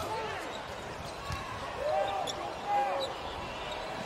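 Live basketball court sound in a near-empty arena: a basketball being dribbled on the hardwood floor, with a few short calls from players and benches echoing in the hall.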